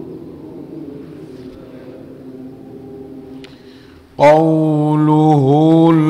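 A man chanting a Quran verse in slow melodic recitation. After a quiet start, his voice comes in loudly about four seconds in with long held notes that dip and rise in pitch, then breaks off briefly.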